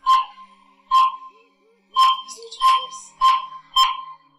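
Six short, sharp tones at one pitch, coming closer together toward the end and then stopping.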